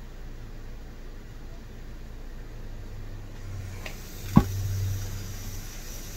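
Steady low hum with one sharp knock a little over four seconds in, preceded by a fainter tick.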